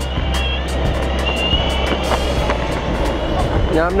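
Electric skateboard wheels rolling on asphalt with street traffic, under background music with a steady drum beat; a man's voice starts right at the end.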